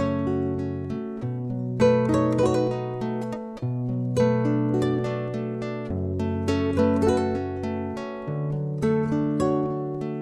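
Instrumental introduction to a song: acoustic guitar picking chords note by note over bass notes that change about every two seconds, with no voice yet.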